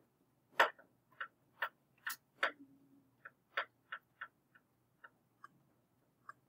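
About a dozen light clicks or taps at an uneven pace, roughly two a second, the loudest one about half a second in.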